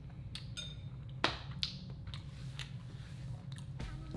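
A person eating noodles from a bowl: quiet chewing with scattered small clicks, the sharpest about a second in.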